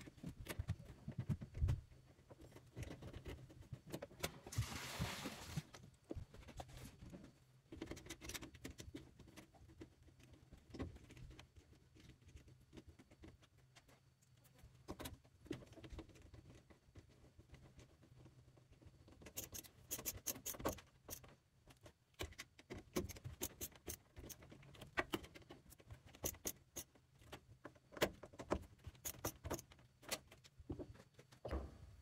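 Hand screwdriver driving screws back into the side of an LG washer's sheet-metal cabinet: faint scattered metal clicks and scraping, with quick runs of clicking in the second half.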